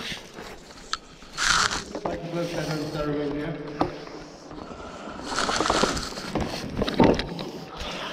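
Rope, gloves and clothing scraping and rustling in short rough bursts during a rope descent, with a faint voice in between and a few sharp knocks near the end.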